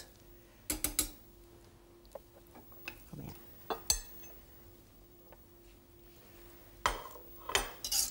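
Metal ladle and slotted spatula clinking and scraping against a stainless-steel cooking pot as braised poussins are lifted out of the liquid. There are a few sharp clinks, about a second in, around four seconds in and near the end, with quiet in between.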